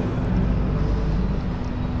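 Steady low background rumble with a faint constant hum underneath.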